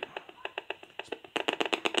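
Gigahertz Solutions HF 35C RF analyser's built-in loudspeaker clicking irregularly as it picks up a smart meter's pulsed radio transmissions; about a second and a half in the clicks thicken into a fast crackle as the meter sends a burst.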